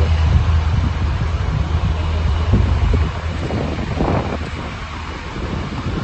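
A steady low drone of an idling truck that fades out about three seconds in, with wind and handling noise on the phone's microphone.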